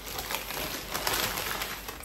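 Thin plastic bag crinkling and rustling as it is handled and pushed into a paper bread bag, with a steady crackle throughout.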